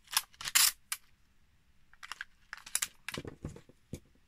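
Washi tape being pulled off its roll and handled against card and a plastic pocket: a few short rasping rips in the first second, more rustling and tapping in the second half, and a sharp click near the end.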